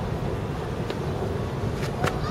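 Steady low outdoor rumble with a few faint clicks, one about a second in and two near the end.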